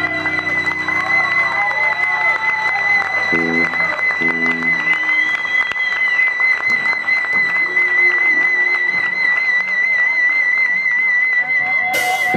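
Electric guitar feedback held as one steady, slightly wavering high tone while a concert crowd claps and cheers. Two short low chords sound about three and a half and four seconds in.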